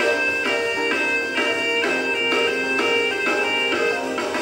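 Saxophone solo from a live jazz band performance: a string of held notes, changing pitch about every half second.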